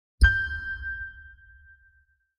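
Intro logo sting: one bright metallic ding with a deep low boom under it, struck about a quarter second in and ringing away over about a second and a half.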